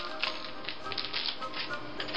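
Plastic food packaging crinkling and rustling in irregular crackles as a block of cheese is unwrapped by hand.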